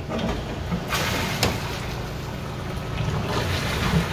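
Bottom blowdown valve of a low-pressure steam boiler open, with water and sediment rushing out through the drain pipe in a steady hiss that grows fuller about a second in. The blowdown is flushing sediment out of the bottom of the boiler.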